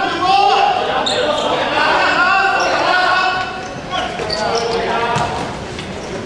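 Basketball game sounds in a large, echoing sports hall: a ball bouncing on the court, players' shoes squeaking on the floor, and players' voices calling out.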